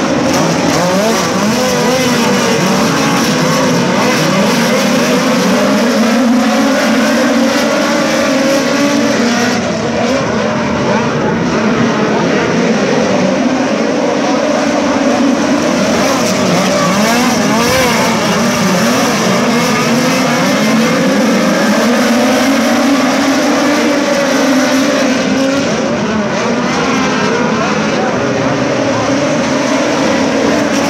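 A pack of USAC midget race cars running at racing speed, several engines sounding at once, loud and unbroken, their pitch rising and falling as the cars accelerate and back off around the oval.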